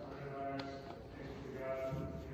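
Voices singing a hymn in long held notes that move from pitch to pitch, heard faintly across a large room.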